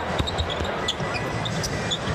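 A basketball being dribbled on a hardwood arena court: repeated low thuds over a steady background of arena noise.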